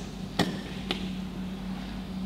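Two sharp knocks on a whiteboard, about half a second apart, as part of a written word is wiped off the board, over a steady low hum.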